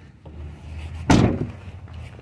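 The rear hatch of a 2006 Honda Element shut with a single loud slam about a second in.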